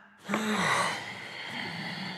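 A person's gasp: a short voiced cry falling in pitch, then a long breathy exhale.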